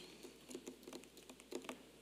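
A few faint, irregular clicks and small taps, about seven in two seconds, over quiet room tone.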